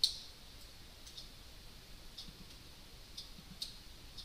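Computer mouse clicking several times at irregular intervals, with the sharpest and loudest click right at the start.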